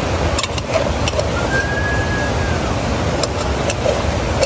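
A metal ladle stirring meat stew in an aluminium pot over an open wood fire, with a few light clinks against the pot, over a steady loud rumbling noise. A brief thin high tone sounds about a second and a half in.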